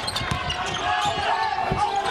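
Basketball bouncing on a hardwood court during live play, a run of irregular thumps over the steady noise of an arena crowd.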